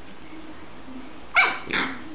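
A small dog barking twice in quick succession about a second and a half in, the first bark the louder, during rough play between two dogs.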